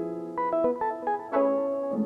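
Chopped piano sample playing back: a chord, then a quick run of single notes, then another chord held through the second half.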